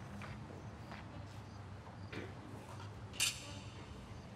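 Quiet outdoor ambience before the music starts: a low steady hum with a few faint short chirps, and one brief sharp sound about three seconds in.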